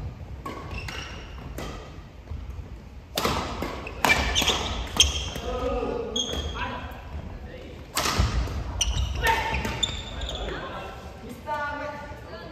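Badminton rallies in a large gym hall: repeated sharp clicks of rackets striking shuttlecocks, ringing in the hall, with players' voices calling out between shots.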